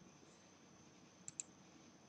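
Near silence, broken by two quick clicks of a computer mouse about a second and a quarter in.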